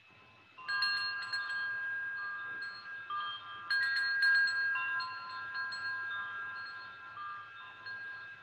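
Wind chimes ringing: a cluster of light strikes about a second in and another just before the middle, their several high tones lingering and overlapping, with a few fainter strikes between.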